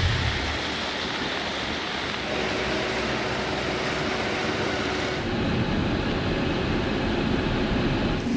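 Heavy rain falling, a steady hiss of noise. About five seconds in the sound turns duller, with more low rumble.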